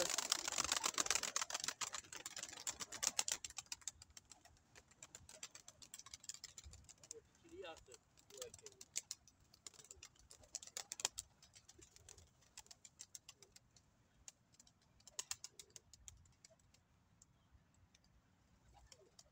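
Rapid wing flapping of domestic pigeons taking off close by, a dense run of fast clicks over the first three to four seconds. After that come sparse wing clicks and a few short pigeon coos.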